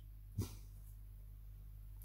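A black dog gives one short sniff about half a second in. Otherwise a faint steady low electrical hum.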